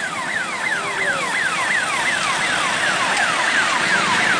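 Electronic siren of a police vehicle sounding a fast falling yelp, about three downward sweeps a second, over a steady noise of road traffic and motorcycle engines. It grows slowly louder.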